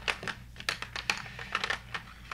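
Coloured pencils clicking against each other and their tray as fingers sort through them: an irregular run of light clicks.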